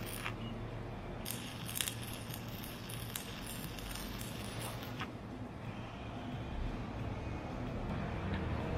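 Stick welding arc from a 1/8-inch 7018 rod laying a stringer bead, a steady crackle and hiss that stops about five seconds in.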